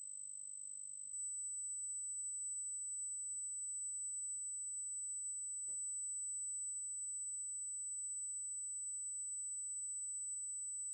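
A steady high-pitched electronic whine with a faint low hum under it, turning thinner and a little louder about a second in, and one soft click near the middle. It is audio interference on the stream, the noise viewers flagged as static.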